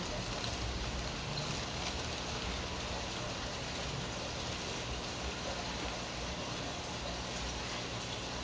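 Steady aquarium water noise: bubbling and splashing from air-stones and filter returns in the display tanks, over a low steady hum of pumps.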